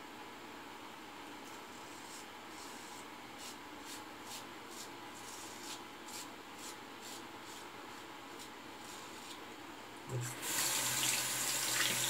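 A OneBlade single-edge safety razor with a Feather FHS-10 blade scraping through lathered stubble in a run of short, faint strokes. About ten seconds in, a tap is turned on and water runs steadily into the sink, much louder than the strokes.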